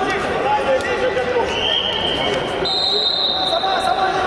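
Voices in a large sports hall, people talking and calling out during a wrestling bout. About one and a half seconds in, a steady high whistle-like tone starts; it jumps higher in pitch a little before the three-second mark and holds.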